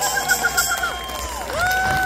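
Live band closing a song on a held note that cuts off about halfway through, with the crowd cheering; a new sustained note starts near the end.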